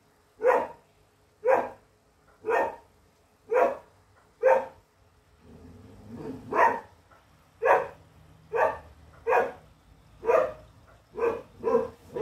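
English Setter barking repeatedly, about a dozen single barks roughly a second apart, with a short gap near the middle. These are warning barks at an animal she is standing her ground against.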